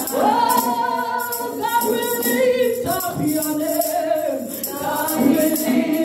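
A woman singing a worship song into a microphone, her voice gliding and wavering over backing music with a steady, shaking percussion beat.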